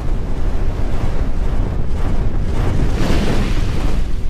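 Logo-reveal sound effect: a loud, deep rumble of noise with a rushing swell about three seconds in.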